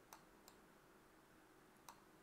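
Near silence, broken by three faint, short clicks of a computer mouse.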